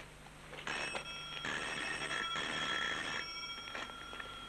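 Electric doorbell ringing in three short rings close together, starting just under a second in.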